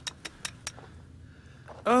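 Four quick, sharp clicks in the first second, then a man's loud exclamation "Oh" falling in pitch near the end.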